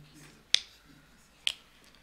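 Two sharp clicks about a second apart, over faint room tone.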